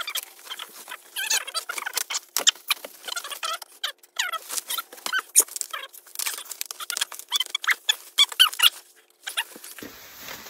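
Bubble wrap being handled and pulled off a large wrapped item: dense crinkling and crackling of the plastic with short squeaks as it rubs, pausing briefly near the end.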